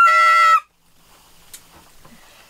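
Saxophone holding a high note that cuts off suddenly about half a second in, then quiet room tone with one faint click.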